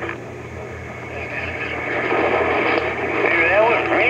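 Static and band noise from an AM radio receiver on the 11-metre band. Faint, warbling voices of distant stations come up through the noise near the end, over a steady low hum.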